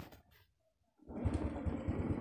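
Honda Wave Alpha's small single-cylinder four-stroke engine catching about a second in, after a near-silent moment, and then running at an even, rapid idle.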